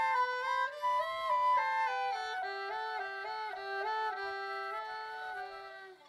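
Flute and violin playing a melody together as a duet, the notes moving steadily. The phrase dies away right at the end.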